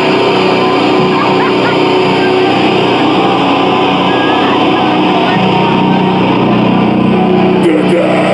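Crowd of fans shouting and cheering over a loud, steady, sustained drone of distorted electric guitar and bass ringing through the stage amplifiers, with a deeper low end filling in a little past halfway.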